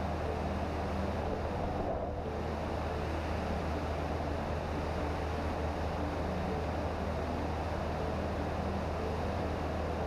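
Cessna 152's four-cylinder Lycoming engine and propeller droning steadily in cruise, a constant low hum under rushing wind noise on the microphone.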